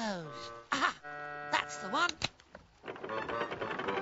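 Cartoon music and sound effects: pitched notes sliding downward and swooping, a sharp click about halfway through, then a dense rushing noise in the last second.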